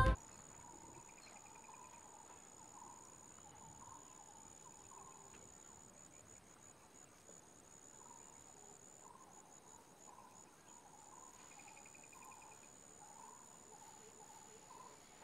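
Faint outdoor insect trilling: a steady high-pitched note that flickers now and then, with scattered soft chirps below it and two short trills, one about a second in and one near the end. A music ending cuts off at the very start.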